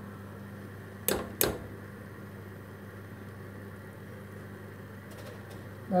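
A metal wire skimmer clinks sharply twice against a steel stockpot, about a second in and a third of a second apart, while boiled dumplings are lifted out to drain. Underneath is a steady low hum and hiss.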